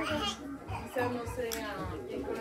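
Children's voices talking and calling out, with other voices in the background.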